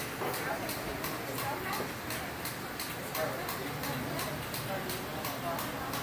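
Drum kit hi-hat ticking steadily, about four strokes a second, in a quiet stretch of a live band's set, under indistinct voices.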